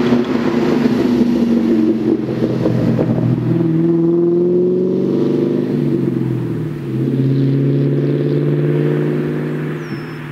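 1999 Mustang GT's 4.6-litre two-valve V8 through a Borla Stinger S-type cat-back and catted X-pipe, downshifting 4th to 3rd to 2nd and engine braking. The exhaust note falls as the revs drop, steps up louder with a gear change about seven seconds in, then falls again as the car slows.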